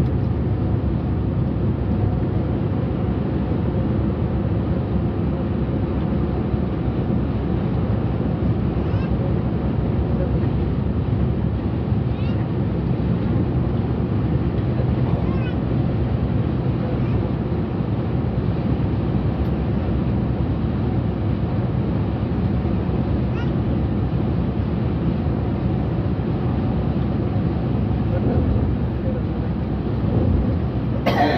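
Steady drone of a Yutong coach's engine and road noise, heard from the driver's cab while cruising on the motorway. A few faint short squeaks rise out of it now and then.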